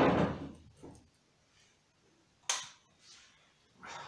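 Handling noise: a brief rustle that dies away within a second, then one sharp click about two and a half seconds in.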